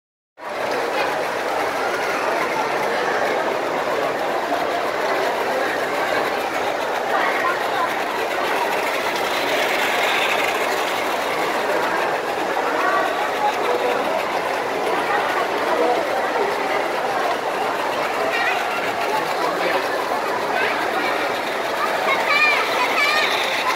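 Battery-powered Plarail toy trains running along plastic track with a steady clatter, over the chatter of children and other voices.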